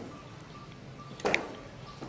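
Quiet room hiss, broken by one brief faint sound a little past a second in.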